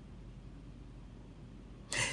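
Quiet room tone with a faint steady low hum in a pause between spoken sentences; a man's voice starts again right at the end.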